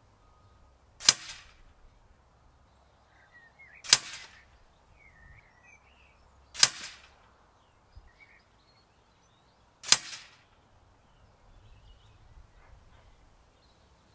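FAC-power Huntsman air rifle firing four shots of FX Hybrid slugs, about three seconds apart. Each shot is a sharp crack with a short tail.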